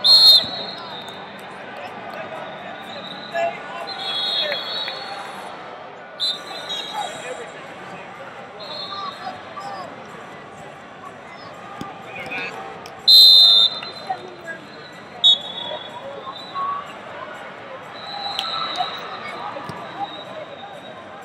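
Hall full of crowd chatter, cut by several short, shrill whistle blasts from referees on the wrestling mats, the loudest about 13 seconds in.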